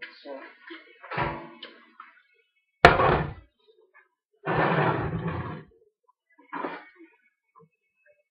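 Kitchen handling sounds: a glass bottle is set down hard on the counter, giving one sharp knock about three seconds in, the loudest sound here. About a second of clattering follows a little later as metal baking trays are moved.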